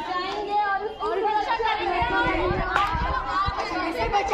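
Several voices talking over one another, with a few low thumps on the microphone between about two and three and a half seconds in.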